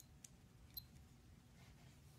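Near silence, with a few faint short clicks from the pushers of a Coobos CB1006 digital watch being pressed in the first second. Two of the clicks carry a tiny high beep, about three-quarters of a second apart.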